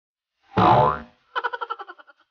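A comic 'boing' sound effect: a short springy pitch glide about half a second in, followed by a rapid stuttering echo that dies away.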